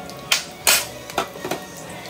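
Four quick clinks and knocks of kitchen dishes and utensils, the loudest a little under a second in, as the emptied bowl is set down beside the stove.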